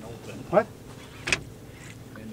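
A man's brief vocal sound about half a second in, then a single sharp click or knock about a second later.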